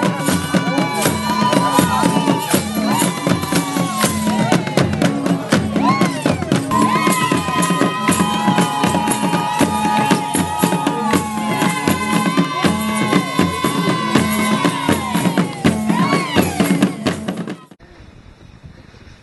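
Traditional Rwandan drum music: a steady drum beat with rattling percussion and high sung lines over it. It cuts off abruptly just before the end.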